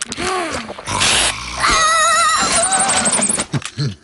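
Cartoon character's wordless vocal sounds: short pitched calls, a brief noisy whoosh about a second in, then a wavering, warbling cry that turns into a high squeaky trill and stops shortly before the end.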